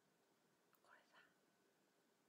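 Near silence, broken about a second in by a brief faint whisper of two short syllables from a young woman, with a tiny click just before it.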